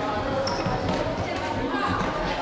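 Voices of players and spectators echoing in a sports hall, with the thuds of an indoor football being kicked and bouncing on the hall floor. A brief high squeak sounds about half a second in.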